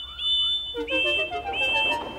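Background music with a rising run of notes, under four short high whistle toots: two at one pitch, then two a little lower.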